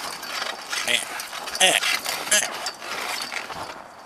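Chain-link fence gate being handled: irregular metallic rattling and clanking of the gate and its latch.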